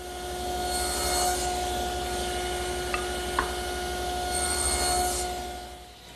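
Table saw running with a steady whine, its blade cutting through wood to make tenon cuts on table rails and stretchers. The sound builds up over the first second and dies away near the end, with two small clicks in the middle.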